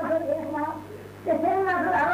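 Speech: a man preaching in a raised, drawn-out voice, with a short pause in the middle, over a steady low electrical hum.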